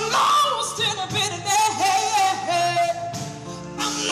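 A woman singing a soulful song to her own concert harp accompaniment, holding one long note with vibrato through the middle that steps down in pitch before the phrase ends.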